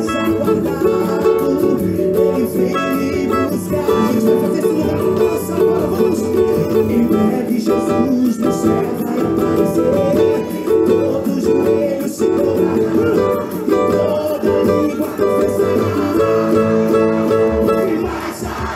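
Pagode gospel music: a cavaquinho strummed in a steady samba-pagode rhythm over a band backing.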